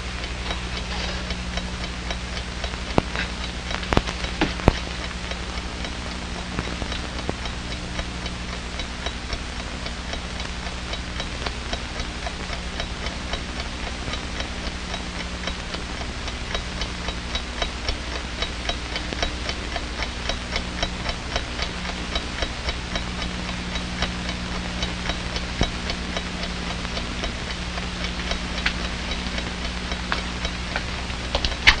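Mechanical alarm clock ticking steadily and evenly over a constant low hum. A few louder knocks come about three to five seconds in.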